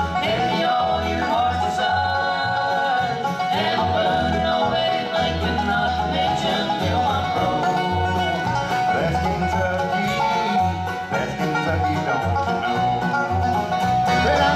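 Live bluegrass band playing banjo, mandolin, acoustic guitar, resonator guitar and upright bass, with the bass keeping a steady pulsing beat underneath.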